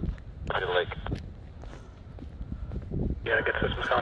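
Footsteps walking on a tarmac lane, with wind rumbling on the microphone. An airband radio plays short, tinny bursts of air traffic control voice, once about half a second in and again from about three seconds in.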